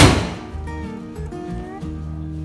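A car bonnet slammed shut: one loud thud right at the start that dies away within about half a second, over background music.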